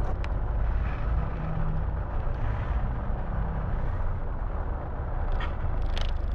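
Bus engine running with a steady low rumble and road noise, heard from inside the upper deck of a slowly moving bus.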